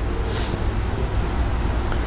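Steady low hum of room and sound-system background noise, with a brief soft hiss about half a second in.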